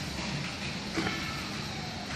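Pencil strokes on paper over a steady background rumble and hum, with a brief louder sound about a second in.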